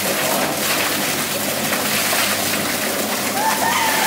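Drum-type chicken plucker spinning, with wet scalded chickens tumbling and slapping against its rubber plucking fingers under a water spray: a steady splashing clatter over a low motor hum. Near the end, a few short high-pitched calls cut through.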